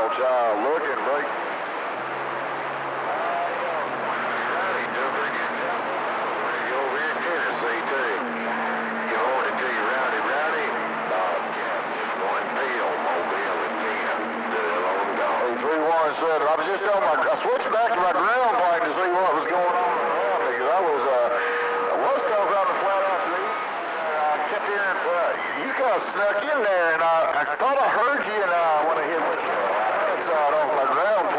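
CB radio receiver on channel 28 picking up distant skip: garbled, hard-to-make-out voices through static. Steady whistling tones sound under the voices at times.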